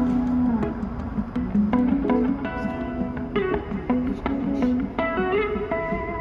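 Background music: an instrumental passage led by plucked guitar, with a gliding low line under a run of changing notes.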